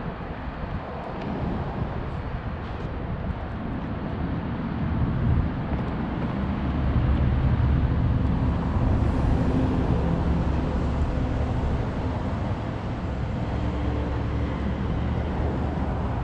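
Low outdoor rumble with no clear tone, growing louder about five seconds in and easing off a little near the end.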